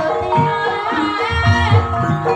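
Javanese gamelan gending in Banyumas style, with a singer's wavering high vocal line over sustained pitched instruments and repeated low drum strokes.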